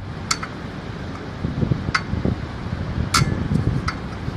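A steady low rumble of outdoor wind and surroundings on a phone microphone, with four sharp clicks spread through it.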